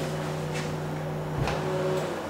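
A steady low hum, then a dull thump about one and a half seconds in as the door of a Labcold laboratory fridge is pulled open off its seal; the hum cuts off at the same moment.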